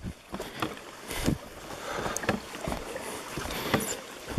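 Footsteps walking a dirt forest trail: irregular low thuds about once or twice a second, with rustling and handling noise on the microphone.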